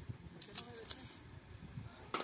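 A few light clinks of metal tongs against roasted clam shells and gravel, in the first second, then quieter.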